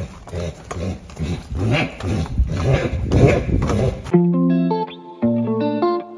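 A horse being led on concrete: hooves clopping, and the horse whinnying. About four seconds in, this cuts abruptly to guitar music.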